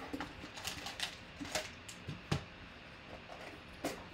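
A white cardboard mailer box being opened and handled by hand: light scraping of the flaps and inner box, with scattered small clicks and taps, the sharpest a little past two seconds and just before the end.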